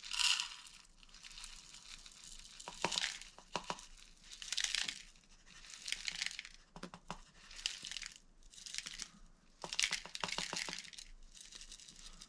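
Dry rolled oats being shaken out of a canister into a plastic measuring cup: a series of short rustling pours a second or two apart, with small clicks of flakes landing in the cup.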